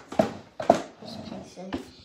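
A boy's voice talking or mumbling, the words unclear, in short loud bursts.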